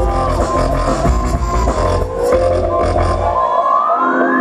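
Live electronic dance music with a heavy bass beat. Over the second half a single tone sweeps steadily upward in pitch, and the bass drops out near the end, a build-up.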